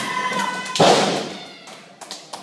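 A wrestler's body hitting the ring mat: one loud thud just under a second in, with a reverberant tail that dies away over most of a second.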